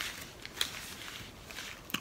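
Quiet room tone between words, with a few faint small clicks, one a little over half a second in.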